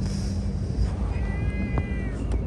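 A gull calling once, a drawn-out, slightly falling call starting about a second in, over a steady low rumble of outdoor background noise.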